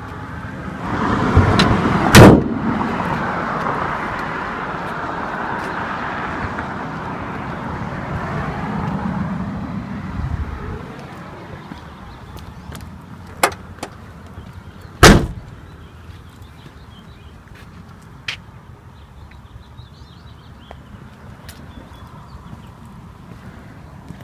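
Two heavy thumps from a 2001 Suzuki Swift. The hood slams shut about two seconds in, and a car door shuts about fifteen seconds in, with a few lighter clicks around it. A rushing noise swells and fades over the first ten seconds.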